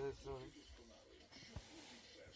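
A woman's short hum of agreement, then faint quiet outdoor background.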